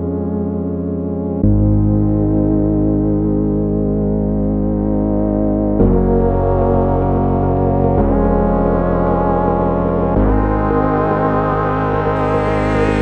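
Background music of slow, sustained synthesizer keyboard chords, the chord changing every two to four seconds.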